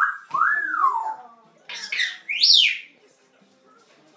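African grey parrot whistling: a whistle that rises and falls, then, about a second later, a higher, louder whistle that sweeps steeply up and back down.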